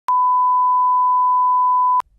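A steady 1 kHz test tone, the reference tone that goes with SMPTE colour bars, held at one pitch and cutting off suddenly.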